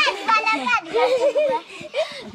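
Young children talking and calling out in high voices, with a short lull about three quarters of the way through.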